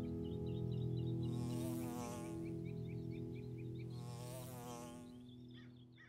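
A soft held musical drone fading out, with a flying insect buzzing past twice and light high chirps throughout.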